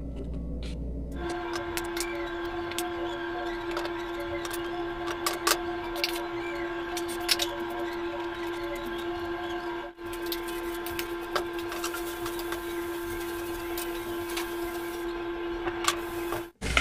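Chicken frying in olive oil in an aluminium frying pan, crackling with scattered sharp pops. A steady droning hum with overtones starts about a second in and runs beneath it.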